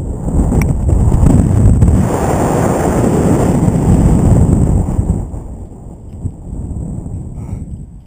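Rushing wind buffeting a GoPro camera's microphone as a rope jumper free-falls and then swings on the rope. It builds sharply in the first half-second, stays loudest for about five seconds, then eases off as the swing slows.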